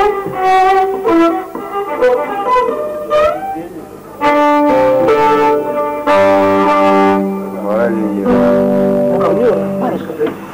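Cretan lyra bowing a folk tune with strummed guitar accompaniment, played live; several notes are held with sliding pitches near the end.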